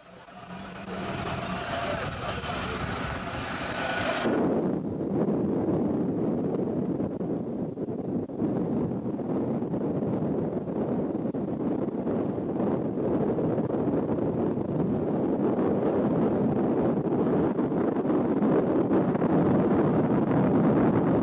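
Steady rumble of a moving road vehicle, engine and road noise with wind on the microphone. The sound changes abruptly about four seconds in to a heavier, lower steady rumble.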